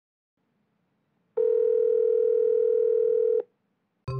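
A single steady telephone tone about two seconds long, starting just over a second in and stopping abruptly: the ringing tone of a video call being placed.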